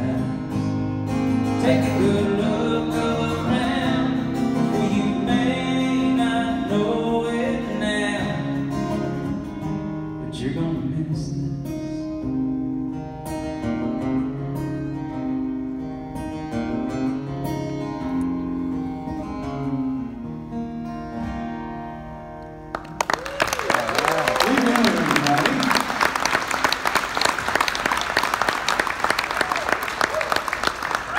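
Live acoustic guitars and a singer finishing a country song, winding down quietly. About 23 seconds in, the audience suddenly breaks into applause and cheers.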